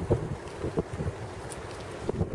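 Wind rumbling on the microphone, with a few soft low thumps of footsteps on the stepping stones in the first second.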